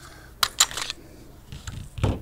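Sig Sauer P320 9 mm pistol being field-stripped by hand: a quick run of sharp metallic clicks from the slide and takedown lever about half a second in, a fainter click later, and a duller knock at the very end as the slide comes off the frame.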